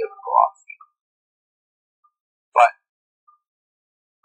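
A pause in a person's narration: a word trails off just after the start, one short vocal sound comes about two and a half seconds in, and the rest is dead silence.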